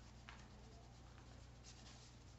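Faint rustling of a deck of tarot cards being shuffled by hand, a few light strokes of card sliding against card, over a low steady hum.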